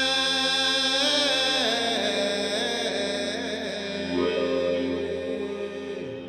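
Live drone music on the Great Island Mouthbow: sustained tones with many ringing overtones, with a voice chanting over it.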